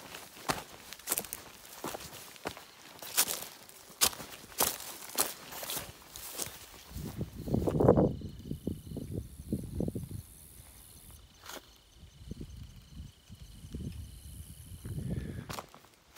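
Hiker's footsteps on a dry, rocky trail covered in fallen leaves, crisp steps about twice a second for the first seven seconds. After that the steps turn duller and lower, with the loudest thump about eight seconds in.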